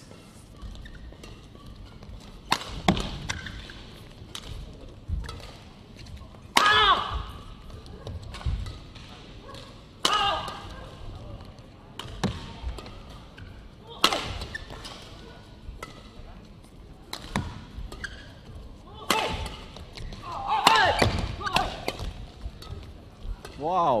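Badminton rackets striking the shuttlecock in a long men's doubles rally: sharp hits every couple of seconds, with short squeaks between some of them.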